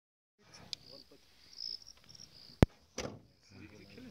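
Crickets chirping in a high, steady trill. A single sharp click comes about two and a half seconds in, and a short noisy burst follows just after it.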